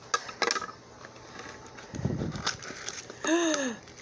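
Hands unwrapping a taped package and bubble wrap to reach a jewelry box, with sharp clicks of handling about half a second in and rustling after. Near the end a woman gives a drawn-out, rising-and-falling "ooh" of delight.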